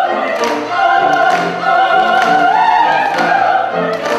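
Four operatic voices, two women and two men, singing together in full voice over a chamber orchestra, in held, vibrato-rich notes that break about every second or so above a pulsing accompaniment.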